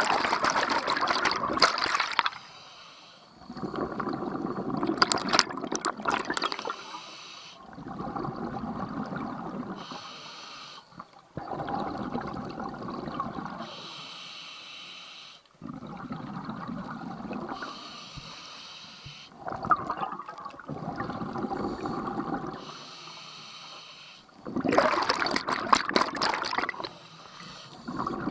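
Scuba diver breathing through a regulator underwater. A short hissing inhale is followed by a longer rush of exhaled bubbles, repeating about every four seconds, six breaths in all. The bubble bursts at the start and near the end are the loudest.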